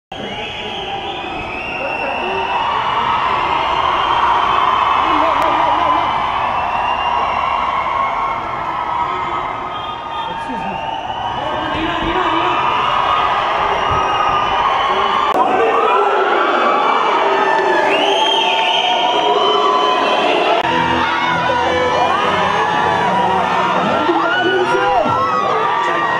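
A large crowd cheering and shouting, many voices at once, becoming a denser mass of shouts over the last few seconds.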